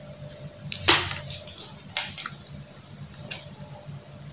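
Handling noises from silk fabric being folded and marked by hand: a few short rustles and scrapes, the loudest about a second in and another about two seconds in.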